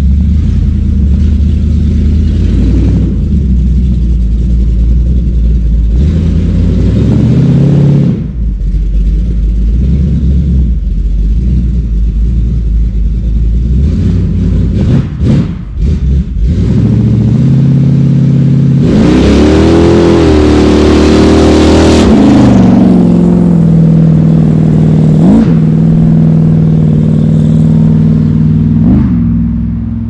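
Chevy S10 pickup's engine revving as the truck is driven hard, climbing in pitch in steps over the first several seconds and briefly dropping off twice. It is loudest about two-thirds of the way in, where the pitch rises and falls, then settles into a steady drone that fades at the end.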